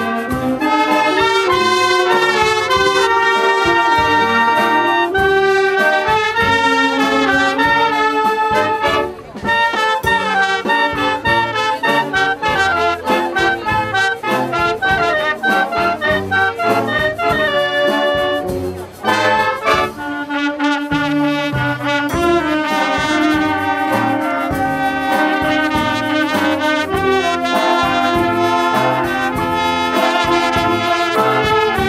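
Wind band playing a piece, clarinets with trumpets and other brass, with short pauses between phrases about nine and nineteen seconds in.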